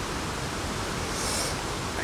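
Steady outdoor background hiss at a cricket ground, with no distinct events.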